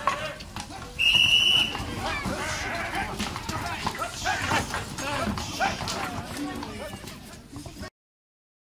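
Voices of handlers and onlookers around a team of harnessed horses, with hooves clopping on brick paving. A short, high, steady tone sounds about a second in, and the sound cuts off just before the end.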